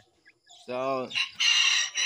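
A rooster crowing: one long call starting a little over a second in, after a brief near-silence.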